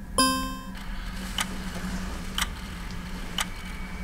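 A short bright musical note, then a clock ticking slowly, about once a second, as the night passes in sleep.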